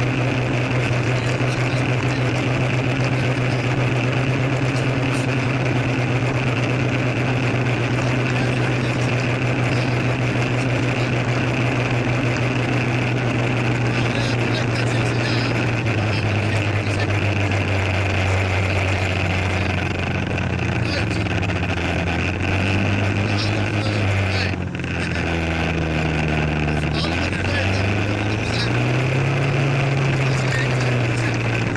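Motor scooter engine running at steady cruising speed under a constant rush of wind noise. About halfway through the engine note drops and wavers as the scooter slows, dips briefly, then rises again near the end as it picks up speed.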